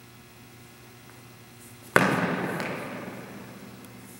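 A single sharp strike from a practice broadsword about two seconds in, echoing in the hall and dying away over about a second and a half.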